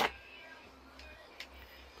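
A sharp plastic click as a latch on a hard plastic tool case is snapped open, followed by a fainter click about one and a half seconds later. A radio plays faintly in the background.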